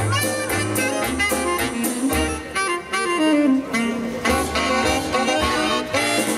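A big band with a saxophone section playing swing jazz live, over drums and a walking low line. About three seconds in, the horns play a run of notes falling in pitch.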